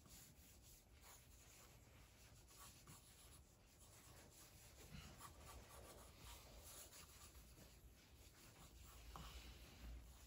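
Faint, irregular scratching strokes of a graphite pencil sketching on drawing paper.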